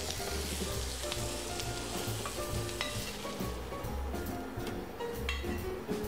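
Marinated chicken thighs sizzling in oil in a frying pan. The sizzle thins out about halfway through, and there are a few light clicks of a utensil.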